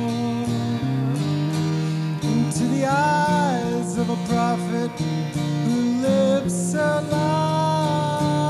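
A live band plays a slow song: guitar with sustained chords, and a man singing. His voice comes in about three seconds in and again near the end.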